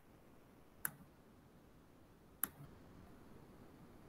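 Two short, sharp computer mouse clicks about a second and a half apart, picked up faintly by a microphone over quiet room hiss.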